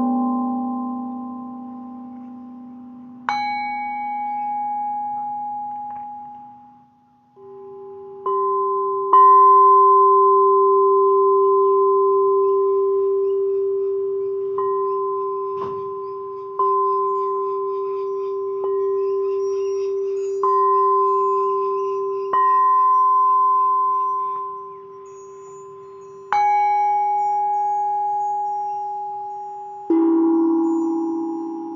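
Singing bowls struck one after another with a mallet, about a dozen strikes at a few different pitches, each tone ringing on and fading slowly. From about a third of the way in, one lower tone keeps sounding under the later strikes.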